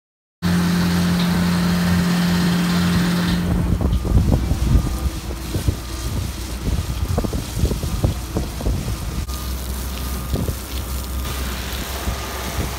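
Industrial machinery humming steadily with a pronounced low tone, starting about half a second in. After a few seconds this gives way to wind buffeting the microphone over a low, steady plant drone.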